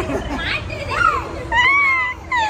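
A group's lively, high-pitched voices calling out and laughing, with a long, drawn-out exclamation near the end.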